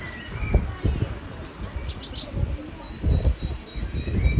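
Birds calling in an outdoor aviary: short high chirps, a quick cluster of them about two seconds in, with cooing like a dove's, over low rumbling bumps.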